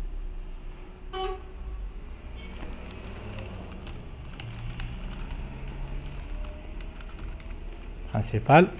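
Typing on a computer keyboard: irregular light key clicks over a low steady hum. A brief pitched sound comes about a second in.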